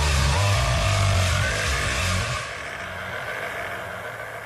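Hardstyle dance music from a live DJ set: heavy bass under a noisy synth wash, then a little past halfway the bass drops out and the top end fades, leaving a quieter break.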